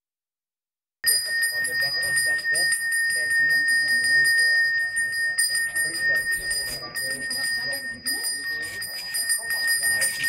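A temple priest's hand bell rung continuously, a steady high ringing that starts about a second in and dips briefly a couple of times, over a low murmur of voices.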